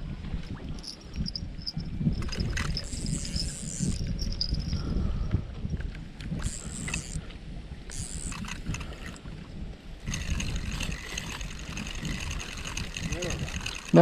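Wind buffeting the microphone, with the whirr of a spinning reel being cranked in a few short spells and then more steadily over the last few seconds as a fish hooked on a bite is reeled in.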